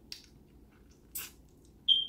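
Mouth sounds of eating fried chicken: two short wet smacks, the louder about a second in. Near the end a thin, high whistle-like tone starts and pulses.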